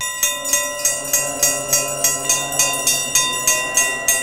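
A hanging metal temple bell rung by hand, struck again and again at about three strikes a second, its ringing tone carrying on between the strikes.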